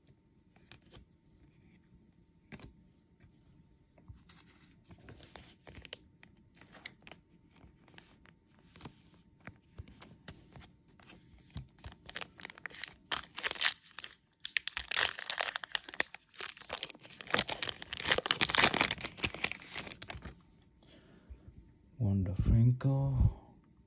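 Trading cards handled and shuffled with light clicks and rustles, then a Topps card pack wrapper torn open and crinkled, loudest from about twelve to twenty seconds in.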